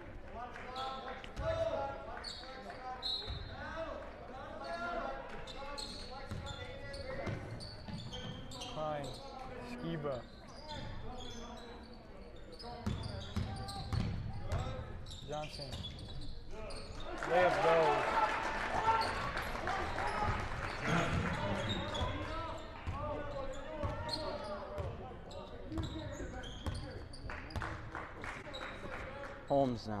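A basketball being dribbled on a hardwood gym court, sharp repeated bounces echoing in a large gym, with players and coaches calling out; the voices get louder for a few seconds just past the middle.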